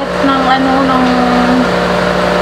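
A person's voice holding one long drawn-out note over a steady low hum.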